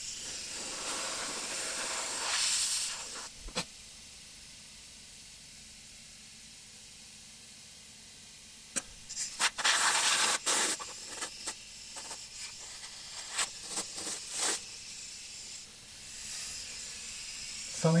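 Compressed-air blow gun blowing loose sand out of the mould cavities in a green-sand casting flask. It hisses for the first few seconds, then comes in a run of short blasts from about nine to fifteen seconds in.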